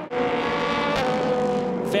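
Sports-prototype race car engine running at steady high revs, one sustained buzzing note that starts suddenly and shifts slightly in pitch about halfway through.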